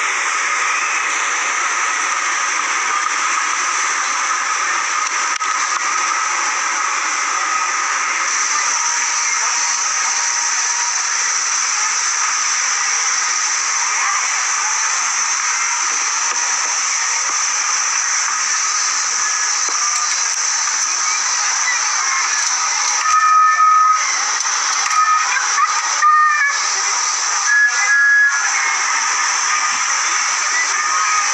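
A steady, loud hissing noise, broken off several times near the end by short gaps and brief steady tones.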